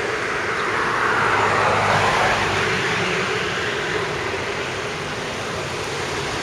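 Street traffic: a road vehicle passing close by, its noise swelling over the first couple of seconds and then easing off, over a steady low hum.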